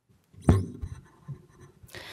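Handling noise at a table microphone: one sharp knock about half a second in, then a few fainter knocks and a rustle near the end.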